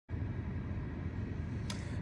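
Steady low background noise inside a parked car's cabin, with a faint click shortly before the end.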